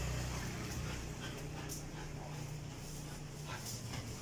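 German Shepherd puppy moving about on a tiled floor, with a few faint short scuffs, over a steady low hum.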